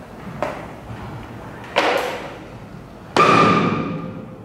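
Three sudden struck hits, about a second and a half apart, each louder than the one before; the last rings on with a clear tone.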